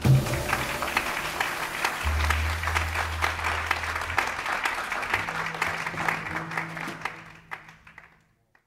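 Audience applause with many separate hand claps, following a last low note from the band at the start. Low held tones sound beneath the clapping, and it all fades out over the final second.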